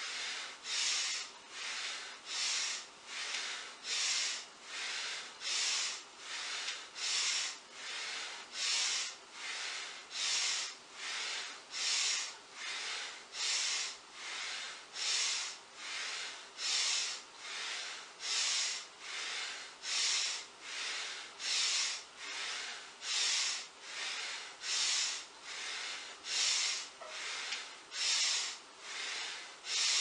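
A person breathing heavily and rhythmically in time with repeated deep squats, drawing breath in through the nose on the way down and breathing out on the way up. There is a little over one breath a second, with louder and softer breaths alternating.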